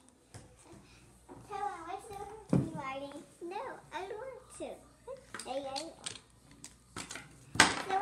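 A young child's voice, high-pitched and hard to make out, in short phrases of play-talk, with a sharp knock near the end.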